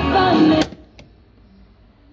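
Music with guitar playing through an old Triglav 62A radio's loudspeaker cuts off abruptly about half a second in as one of its push-buttons is pressed. A single sharp click follows about a second in, then only faint background noise.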